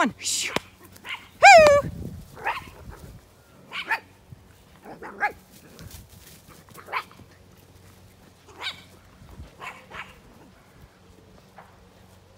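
A dog barking: a loud, high bark about a second and a half in, then a string of smaller sharp barks every second or two.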